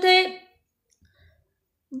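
A woman's voice ends a word, then about a second and a half of pause holding a few faint, soft clicks.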